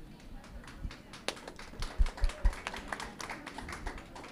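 Handling noise from a handheld microphone as it is passed between two people: scattered clicks and taps, with a few dull thumps about halfway through.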